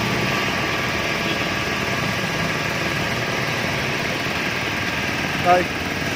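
Belt-driven Toshiba (Toscon) air compressor running steadily, its electric motor and pump giving a continuous even hum with faint steady tones.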